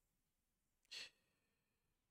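Near silence with one short, faint breath taken by the speaker about a second in.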